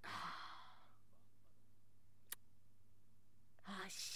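A woman's long breathy sigh out, followed by a single sharp click about two seconds in and the start of a voiced sound near the end.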